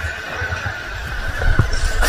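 Stream water rushing and knocking as a person slides down a natural rock water slide in a canyon creek. The noise grows louder in the second half.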